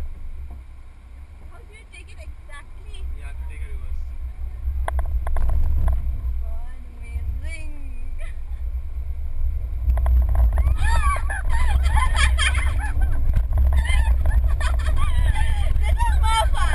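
Low rumble of a car being driven hard around an autocross course, heard inside the cabin. From about ten seconds in, a run of short high-pitched squeals rises over it and the whole gets louder.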